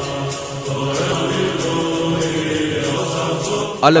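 Chanting voices holding long, steady notes over background music.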